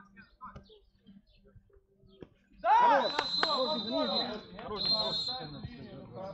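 Faint scattered knocks, then about two and a half seconds in a burst of loud men's shouting from the beach handball players. A long, steady high whistle sounds under the shouts, with a brief break, as play stops.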